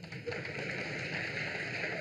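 Steady crowd noise from an audience in a hall, an even, pattering spread of sound with no single voice standing out.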